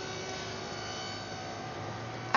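Steady background hum and hiss with several faint, steady tones and no change in level: the noise floor of a live remote broadcast link.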